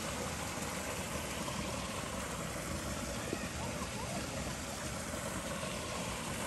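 Steady, even rush of running water from a garden stream, with no rhythm or break.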